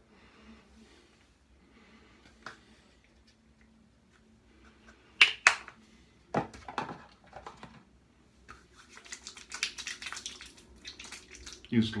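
Two sharp snaps of a plastic flip-top bottle cap about five seconds in, then squelching and quick rubbing as after-shave balm is worked between wet hands and onto the face and head.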